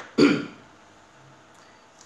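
A man clearing his throat once, briefly, near the start, followed by quiet room tone.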